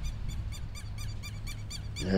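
A rapid, even series of short high chirps, about six or seven a second, from a small animal, over a steady low hum.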